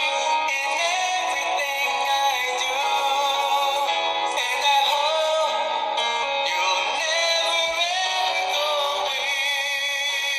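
A man singing loudly, his voice wavering on long held notes, with a thin, tinny sound.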